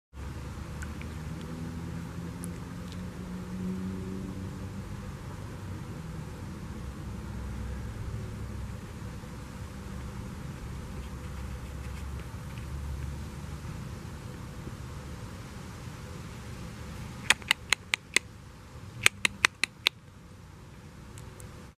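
Low steady rumble of a distant engine or road traffic, with two quick runs of sharp clicks near the end, four and then five.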